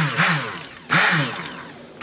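Stick (immersion) blender pulsed in short spurts in a bowl of cold-process soap batter, mixing the oils and lye toward trace. Two bursts, one at the start and one about a second in, each motor whine rising and then falling in pitch as the blade spins up and winds down, over a churning swish of the batter.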